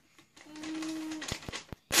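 A white paper gift bag crinkling and clicking as a child pulls it open, ending in a loud crisp rustle. A held, hummed "uhh" from a voice is heard in the first half.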